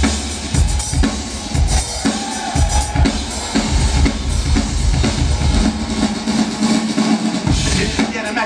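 Live drum-kit solo: a dense run of bass-drum, snare and rimshot strokes.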